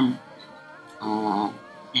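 A woman's voice making one short sound, about half a second long, about a second in, over soft background music.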